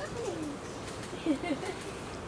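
Low, soft cooing calls from a bird: one falling coo near the start, then two short coos just past the middle.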